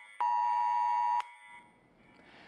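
Mobile phone earthquake alert tone from Taiwan's national-level emergency alert: a single steady, multi-tone beep lasting about a second that cuts off suddenly.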